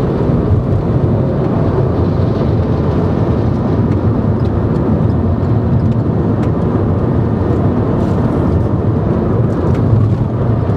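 Steady road and engine noise of a car at highway speed, heard from inside the cabin: an even, low rumble of tyres on the road that holds level throughout.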